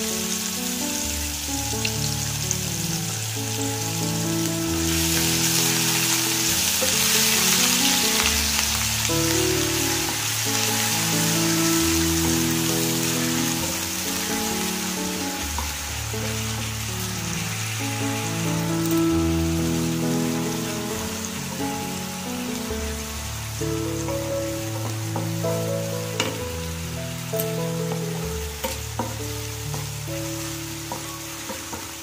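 Chopped onions frying in hot oil with cumin seeds, a steady sizzle that grows louder about five seconds in. It is stirred with a wooden spatula, with a few light taps near the end. Soft background music plays throughout.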